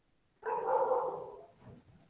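A dog barking once, a drawn-out bark of about a second that fades away, picked up through a video-call microphone.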